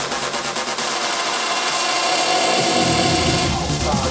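Electronic dance music in a breakdown: the bass drops out and a rushing noise sweep fills the top end, then the deep bass comes back in about three seconds in.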